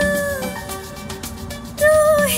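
Background song: a long held note with vibrato, likely a singing voice, fades about half a second in. After a quieter stretch, a new held note begins near the end.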